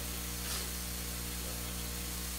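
Room tone of a microphone recording: a steady hiss over a low electrical mains hum, with a faint soft sound about half a second in.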